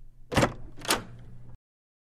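A door-opening sound effect: two sharp clicks about half a second apart over a low hum, cutting off suddenly about a second and a half in.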